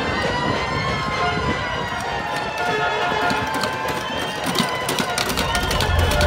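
Emergency vehicle siren wailing in slow rising and falling tones. A run of sharp knocks joins it in the last second and a half.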